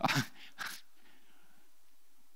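A man's short breathy chuckle, two quick exhales into a headset microphone, then quiet room tone.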